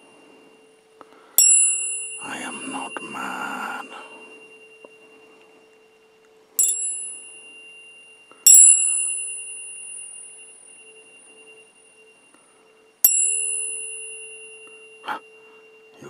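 Metal tuning forks struck four times, each a bright ping that rings on and slowly fades, over a steady low tone. A short knock comes near the end.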